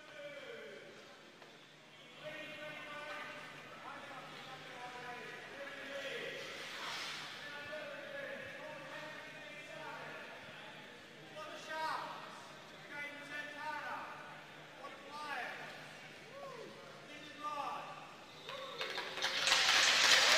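A man's voice over an ice arena's public-address system, faint and echoing through the large hall. Near the end a louder rush of noise builds.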